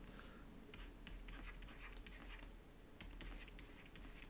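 Faint scratching and light tapping of a stylus writing digits on a tablet, a run of short strokes over a steady low hum.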